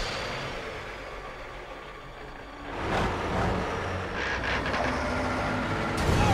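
A semi truck's diesel engine running right alongside a car, fading at first and then growing loud again about three seconds in, with a few brief knocks in the vehicle noise.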